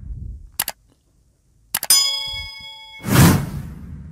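Subscribe-button animation sound effects: a quick double mouse click about half a second in, then another click and a bright bell ding that rings for about a second, then a loud whoosh near the end.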